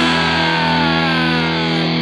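Punk rock music: a held, distorted electric-guitar chord with a falling slide over it. There are no drum beats for these two seconds.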